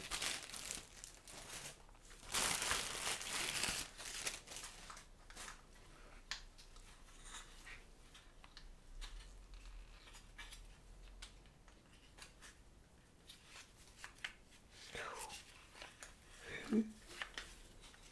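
Clear plastic packaging bag crinkling and rustling, loudest about two to four seconds in, as gloved hands take a part out of it; then scattered light clicks and taps as a grey plastic sharpener attachment is handled.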